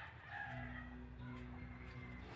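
A rooster crowing over a steady low hum.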